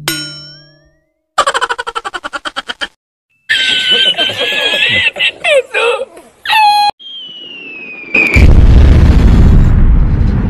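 A string of cartoon sound effects: a fading ding, a fast rattle of about a dozen clicks, a man's high, wheezing meme laugh, then a falling bomb whistle followed by a loud explosion that lasts to the end.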